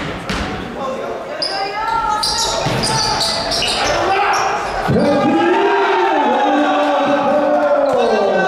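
Basketball bouncing on a hardwood gym floor during play, with sneakers squeaking. Voices call out and echo through the hall.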